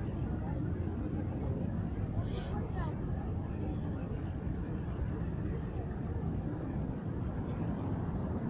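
Steady low rumble with indistinct voices in the background, and two brief high hisses about two seconds in.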